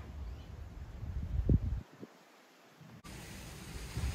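Faint low outdoor rumble from wind and handling on a phone microphone during a walk through a garden, with two soft thumps in the middle. It drops to near quiet, then changes abruptly to a steady faint hiss for the last second.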